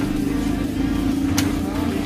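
A steady low mechanical hum, engine-like, with one sharp click about one and a half seconds in.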